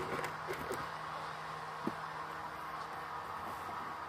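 Faint, steady outdoor background noise with a low hum, and a single light tick about two seconds in.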